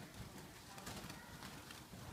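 Faint fluttering and scuffling of red-whiskered bulbuls in a wire cage as a hand reaches in to catch them, with a few light clicks.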